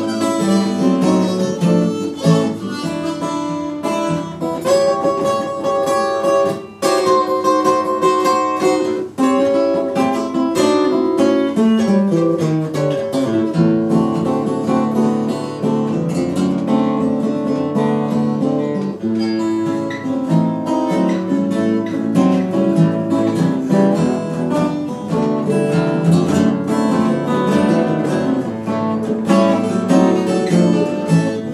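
Instrumental break from a small acoustic group: three acoustic guitars strumming and picking, with a harmonica playing over them and no singing.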